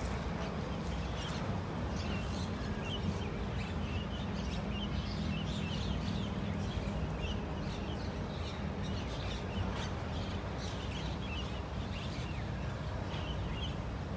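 A flock of Javan mynahs calling, many short overlapping calls throughout, over a steady low background rumble.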